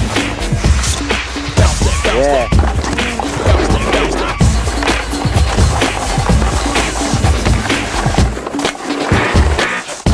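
Hip-hop mashup music with a steady beat.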